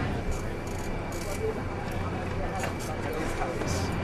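Faint background voices of people talking, over a steady low hum and outdoor hiss.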